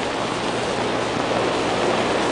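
A steady, even rushing hiss with no rhythm or pitch.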